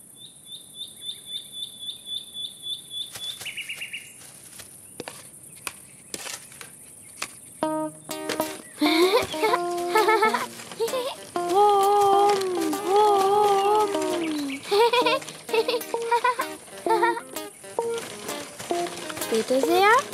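Cartoon soundtrack: a quick run of high ticks for the first few seconds, then a string of light knocks, then from about eight seconds in a bouncy, wavering tune with sliding notes.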